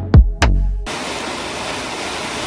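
Electronic music with deep, falling bass-drum hits cuts off about a second in, giving way to a steady hiss of loose grain mix pouring out of a suspended fabric bulk tote and down a wooden chute.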